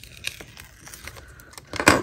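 A paper sticker being peeled off its glossy backing sheet, with light crinkling and small paper ticks, and one louder rustle of paper near the end.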